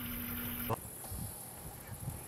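Outdoor background: a steady low hum with a high hiss, cut off abruptly under a second in and replaced by quieter, fainter background noise.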